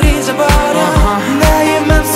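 K-pop R&B song: male vocals singing in Korean over sustained chords and a steady kick-drum beat of about two thumps a second.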